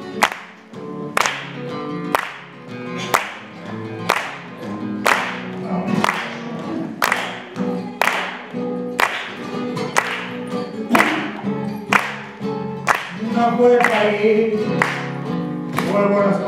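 Flamenco guitar strummed under hand-clapping (palmas) that keeps a steady beat of about one clap a second. A singing voice joins in near the end.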